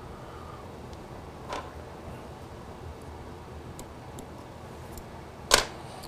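Faint steady room hum, with a small click about a second and a half in and a sharp, louder click near the end from fly-tying tools as thread is started on a hook in the vise.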